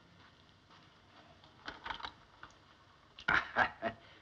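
Soft footsteps on a floor, then a short clatter of ice as a champagne bottle is pulled out of a metal ice bucket near the end.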